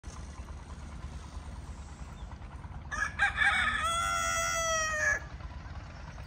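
A rooster crowing once, a call of about two seconds about halfway in that ends on a long held note dropping at the very end, over a low steady background rumble.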